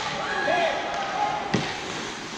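Voices around a hockey rink, with one sharp bang about one and a half seconds in.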